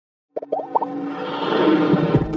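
Intro jingle sound effects: a quick run of four short rising bloops about half a second in, followed by a swelling musical sound.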